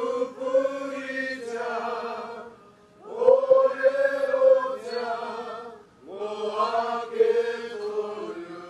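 A group of voices singing a Māori waiata together, unaccompanied, in three long phrases of held notes with a short break for breath between each.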